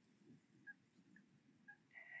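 Near silence: faint outdoor ambience with three very faint short high peeps about half a second apart.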